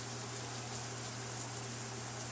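Steady hiss with a low, even hum beneath it: the recording's background noise, with no distinct sound event.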